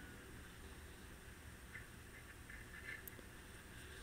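Near silence: room tone with a low hum, and a few very faint small handling sounds.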